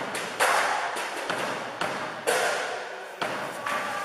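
A child striking the drums and cymbals of a drum kit in irregular single hits, about half a dozen, each hit ringing on with a long echo in a large gymnasium.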